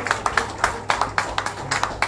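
Audience applause thinning out to scattered individual claps, a few a second, and fading away.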